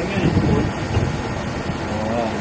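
Inverter air conditioner outdoor unit running, its inverter-driven compressor giving a steady whistle over the unit's running noise. This whistle is the compressor sound the technician was listening for, the sign that the inverter compressor is running.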